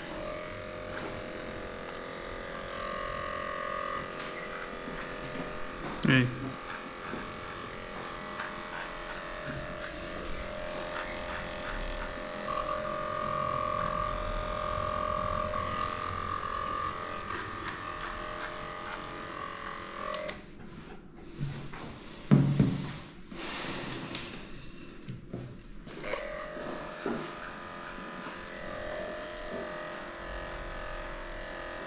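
Cordless electric dog clipper running steadily as it shaves through a matted coat. It stops for about five seconds two-thirds of the way in, with a brief loud sound in the gap, then starts again.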